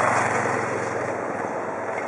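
A passing vehicle's rushing noise, loudest at the start and slowly fading away.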